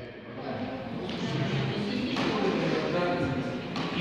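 Background chatter of several people talking quietly in a large, echoing gymnasium.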